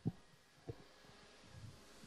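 Two soft, low thumps about two-thirds of a second apart, over a faint background of room tone.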